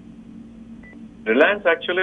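A pause with a faint steady hum, broken by one short high electronic beep just under a second in; then a voice starts speaking a little after a second.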